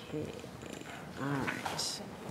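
Speech only: a voice quietly says "okay" and then starts "all right" over meeting-room tone.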